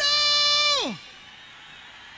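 A high sung wail from a rock singer on the concert soundtrack, held on one pitch, then sliding down and stopping about a second in. Only a low background hiss follows.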